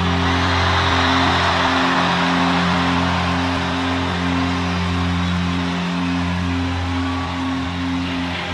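Live rock band's closing chord on distorted electric guitar and bass, held and ringing out steadily with no drum beat. The recording is pitched a whole step down.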